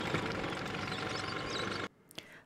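Two-stroke Vespa scooter engine heard faintly as the scooter drives off, over a steady outdoor street hiss with a few faint bird chirps. The sound cuts off abruptly just before the end.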